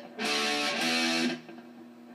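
Electric guitar playing two two-finger power chords, struck about half a second apart, each ringing briefly. The ringing is cut off at about 1.4 seconds, leaving a faint amp hum.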